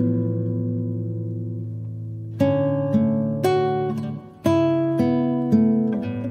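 Background music of acoustic guitar: a chord rings and fades, then plucked chords follow at an easy pace.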